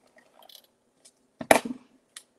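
Faint rustling of paper being handled, then, about one and a half seconds in, a single sharp knock on the tabletop work surface.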